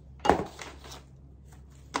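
Thin wooden strips set down in a cardboard box: a sharp wooden knock just after the start, then a second, lighter click near the end.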